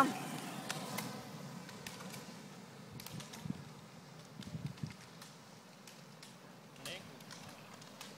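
Faint roadside ambience with a few light, scattered clicks of roller-ski pole tips striking asphalt, most of them in the first second.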